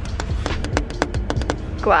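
Fingernails tapping on the glass side panel of a computer case, a quick irregular run of about a dozen sharp clicks, done as ASMR tapping.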